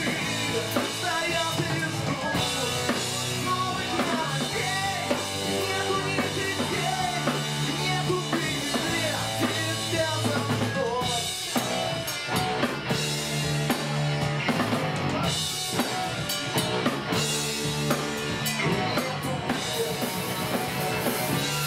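Live ska-punk band playing: drum kit, guitars and a male singer singing over them, steady and loud throughout.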